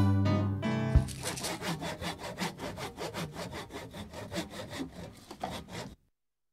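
A final musical chord rings out, then a handsaw cuts through wood in quick, even strokes, about four or five a second. The strokes fade away and stop just before the end.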